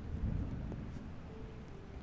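Low rumbling handling noise on the phone's microphone as the camera is moved, with a faint steady hum underneath.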